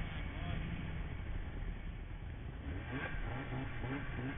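Snowmobile engine running under a steady low rumble, heard from a camera mounted on the sled. From about three seconds in, a regular pulsing comes in, about three beats a second.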